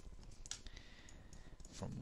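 A few faint computer mouse clicks, then a man's voice starts near the end.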